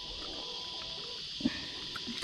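Steady high chorus of insects, with one short thump about one and a half seconds in.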